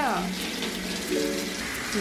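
Water running from a handheld shower into a bathtub as wet hair is rinsed under it, a steady splashing rush.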